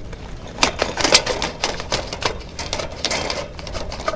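A sewer inspection camera being pushed along a drain line, its push cable and camera head making irregular clicks and rattles, loudest about a second in.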